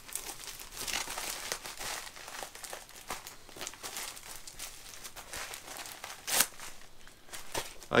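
Plastic bubble wrap being crinkled and pulled away from Blu-ray cases: an irregular run of small crackles, with one louder crackle about six seconds in.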